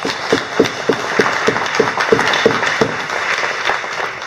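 Audience applauding: a dense patter of many people clapping.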